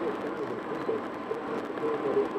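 Steady road noise heard inside a car cruising at highway speed: the tyres on the pavement, the engine and wind running without a break.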